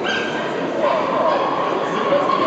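Dogs barking and yipping over people talking.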